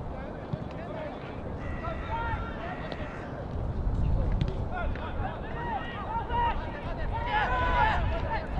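Shouted voices on a football pitch, heard from the sideline over a steady low rumble. The calls come in short bursts and are strongest about four seconds in and near the end.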